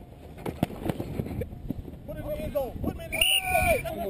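Outdoor football practice: a few sharp knocks and taps early on, then players and coaches shouting, with one loud shout near the end.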